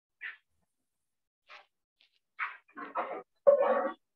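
An animal calling in a short series of brief calls, with gaps between them, getting louder toward the end; the last call, near the end, is the longest and loudest.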